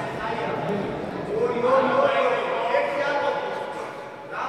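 Men's voices shouting, loudest in the middle, with one drawn-out shout that rises slightly in pitch about a second and a half in.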